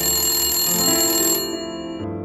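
Old desk telephone's bell ringing steadily, stopping suddenly about one and a half seconds in as the handset is picked up, with soft music underneath.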